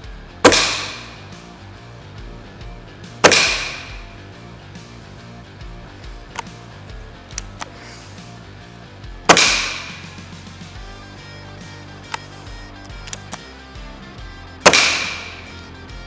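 Four shots from a Gamo Whisper Fusion IGT break-barrel air rifle (5.5 mm, gas-ram piston, integrated suppressor), a few seconds apart. Each is a sharp report with an echoing tail in a large, empty hall. Faint clicks fall between the shots, over background music.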